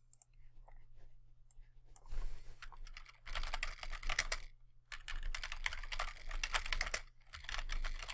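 Typing on a computer keyboard: quick runs of keystrokes in several bursts, starting about two seconds in.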